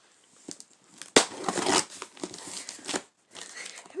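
Cardboard shipping box being opened by hand: packaging tears and crinkles loudly about a second in, followed by lighter rustling and handling as it is pulled open.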